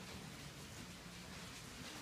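Quiet room tone with faint rustling of paper.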